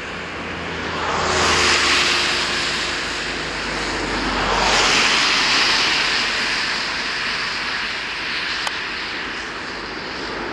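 Cars passing on a wet, slushy road: tyre hiss and engine noise swell and fade twice, loudest about two seconds in and again about five seconds in. A single sharp click near the end.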